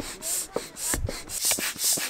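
A small hand-held air pump worked quickly up and down, pushing air into an inflatable pool float. It makes rhythmic hissing whooshes, about two strokes a second, with faint squeaks in between.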